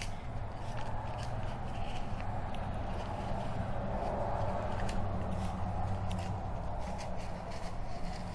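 Transfer tape being slowly peeled off vinyl lettering on a plastic ornament: faint crackling and rustling over a steady room hum.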